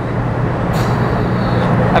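Steady hum and rumble of a busy collision-repair shop floor. A brief high hiss comes in about two-thirds of a second in and lasts about a second.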